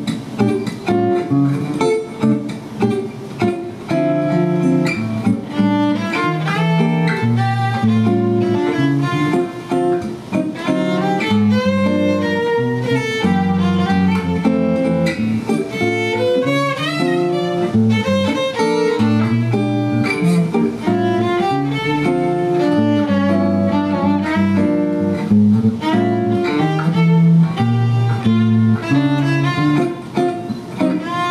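Live duet of violin and acoustic guitar playing a jazz tune: a bowed violin melody over continuous guitar accompaniment.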